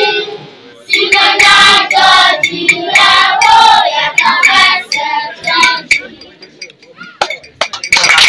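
Group of schoolchildren singing together in short loud phrases, dying down to a quieter stretch with a few clicks about six seconds in.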